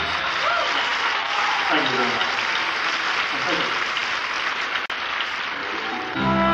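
Concert audience applauding and cheering between songs, heard from within the crowd, with a voice calling out over it in the first few seconds. There is a brief dropout about five seconds in.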